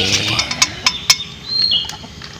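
A bird's short high call, a whistle that drops to a lower note, heard twice, at the start and near the end. A few sharp clinks, like a spoon on a dish, fall in between.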